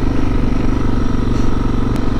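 Suzuki DR650's single-cylinder four-stroke engine running at a steady, even speed while the bike is ridden, heard from on the motorcycle.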